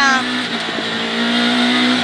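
Renault Clio Williams rally car's 2.0-litre 16-valve four-cylinder engine running at speed, heard from inside the cockpit; its note holds steady and grows a little louder toward the end.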